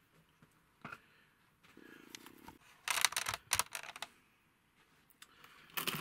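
Light handling sounds of small wooden model pieces on a workbench: a single click about a second in, then a short burst of clicking and clatter around three seconds in.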